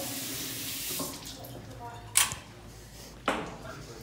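Tap water running into a bathroom sink while hands are washed, strongest in the first second and then easing off. Two sharp clicks come about a second apart in the second half.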